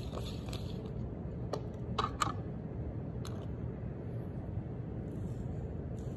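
Espresso distribution tool and tamper worked on a metal portafilter basket of ground coffee: a few small clicks and taps, the loudest pair about two seconds in, over a steady low hum.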